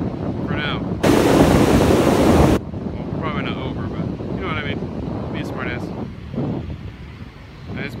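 Spillway floodwater rushing down rocky rapids, a steady rushing noise, with wind buffeting the microphone. About a second in, a strong gust blasts the microphone for about a second and a half, then cuts off suddenly.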